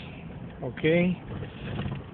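A car running at low speed, heard from inside the cabin as a steady low hum and road noise. A man says a single "ok" about a second in.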